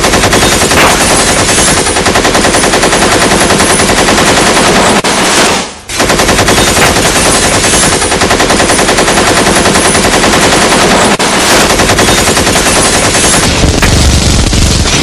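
Machine-gun sound effect: loud, sustained automatic fire as a rapid, even stream of shots, breaking off briefly about six seconds in before resuming.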